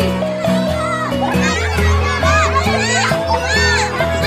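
Children shouting and chattering excitedly in a group game, over background music with steady held bass notes.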